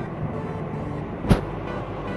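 Spatula stirring and scraping thick semolina halwa in a non-stick frying pan, with one sharp knock of the spatula against the pan a little past halfway.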